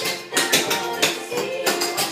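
Clogging taps striking a hardwood floor in a quick series of jingling strikes during a clog dance routine, over background music.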